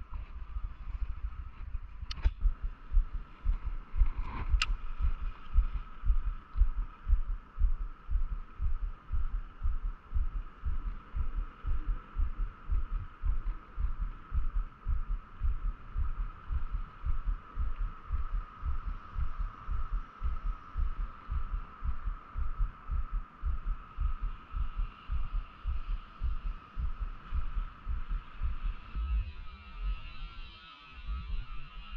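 Fishing reel being cranked through a steady retrieve, the handle turns heard as evenly spaced low thumps about two to three a second, over a faint steady hum. Two sharp clicks come in the first few seconds.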